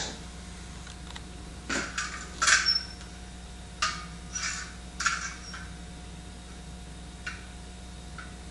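A handful of light, scattered metallic clicks and clinks from the rebuilt Corvette steering gearbox being handled as its turning resistance is rechecked with a spring scale, over a faint steady hum.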